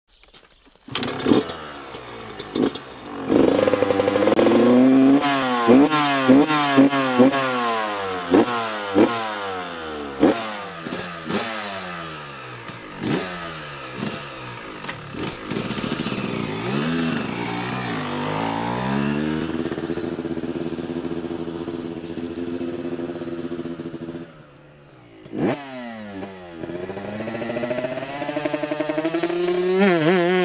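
Two-stroke dirt bike engine, a Kawasaki KX500, revving up and down again and again, its pitch climbing and falling in repeated sweeps with sharp blips. Near the end it drops to a short lull, gives one sharp rev, then climbs steadily.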